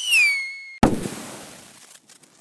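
Logo sting sound effect in the style of a firework: a whistle falls in pitch and holds, then a sudden bang comes a little under a second in, with a crackling tail that fades away.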